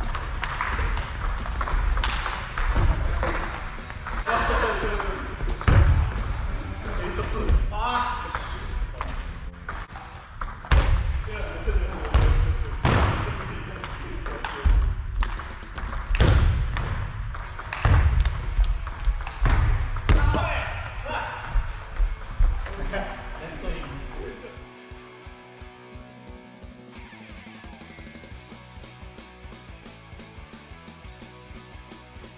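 Table tennis rallies on a wooden hall floor: the ball clicking off paddles and table, heavy irregular thumps of footwork on the floor, and players' voices between strokes. The play sounds stop about six seconds before the end, leaving quieter background music.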